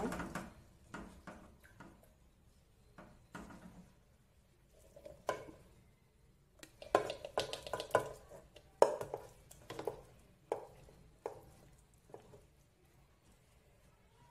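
A wooden spoon knocking and scraping against a metal pot as cooked penne with chicken is tipped out into a glass baking dish. Scattered knocks, busiest from about seven to nine seconds in.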